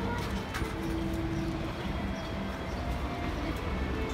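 Steady low rumble and background hubbub around a carousel, with faint held musical tones and a few light knocks.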